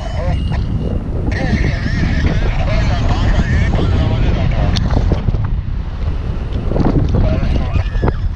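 Airflow buffeting the camera microphone on a tandem paraglider in flight: a dense, steady low rumble of wind noise.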